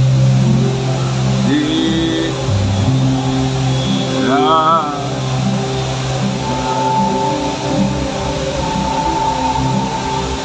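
Instrumental kirtan music: harmonium holding steady chords under acoustic and electric guitar, with a wavering, bent note about four seconds in.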